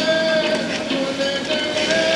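JUKI industrial lockstitch sewing machine running, a steady hum that shifts slightly in pitch with faint ticking, over the drone of other machines in the workroom.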